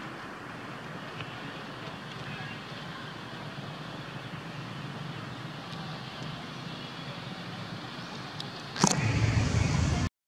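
Steady outdoor background hiss. About a second before the end it jumps suddenly to a much louder rushing noise with a deep rumble.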